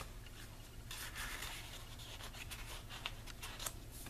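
Paper and cardstock rubbing and rustling faintly as hands slide a photo mat and turn the pages of a handmade scrapbook mini album.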